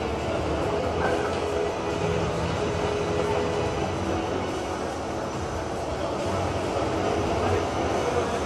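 Steady engine rumble of an ice resurfacer driving onto the rink, over the hum of the arena.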